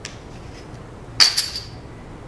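A single sharp clink with a brief high ringing about a second in, from a flashlight being opened: a battery coming out of the tube once its end cap is unscrewed.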